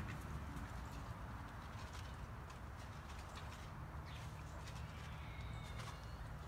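Quiet outdoor ambience: a faint steady low rumble with a few faint bird chirps.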